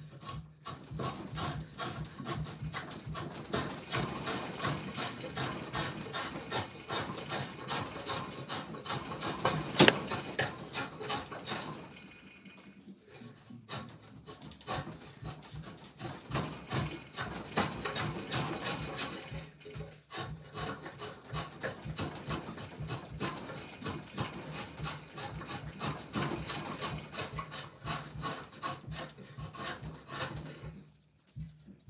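Spokeshave shaving a wooden axe handle blank in quick repeated scraping strokes, with a short break about twelve seconds in and one sharp knock just before it.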